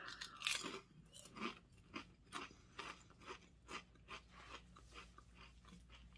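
A person biting into and chewing a large crisp fried-egg-flavoured snack chip: a quick run of crunches, several a second, strongest just after the bite and fainter as the chewing goes on.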